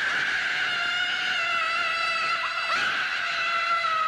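An animated character's long, high-pitched scream, held without a break on one note that slowly sags in pitch.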